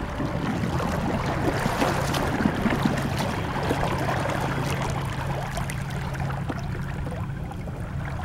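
Water rushing and trickling along a small boat's hull under way, with scattered small splashes and a steady low hum underneath.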